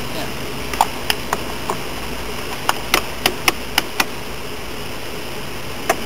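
A car's screw-on gas cap being twisted onto the fuel filler neck: a string of about ten sharp, irregular clicks, most of them packed together in the middle, as the cap ratchets tight.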